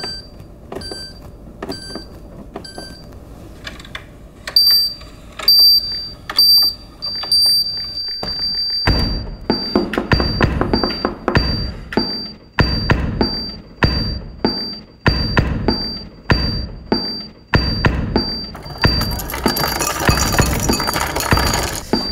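Beeps from the LG InstaView refrigerator's touch control panel, repeating at one high pitch with clicks, then looped into a sampled beat: from about nine seconds in, heavy bass hits play in a steady rhythm under the repeating beeps. Near the end a rushing noise joins the beat.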